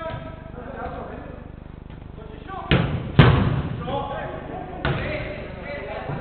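Three thuds of a football being kicked and striking the hall's perimeter boards, two close together just before the middle and the loudest second, a third about a second and a half later, each ringing on in the echo of the large indoor hall. Players' voices call out around them.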